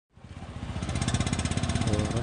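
Motorcycle engines in street traffic: after a brief silence, a small engine's rapid, even putter fades in and grows steadily louder as it comes closer.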